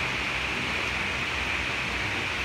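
Steady, even background hiss of room noise with a faint low hum, unchanging throughout, with no distinct event.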